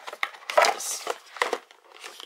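Small plastic storage box being set back into a crowded makeup drawer: a few light clicks and knocks of plastic against plastic organisers and lipstick tubes.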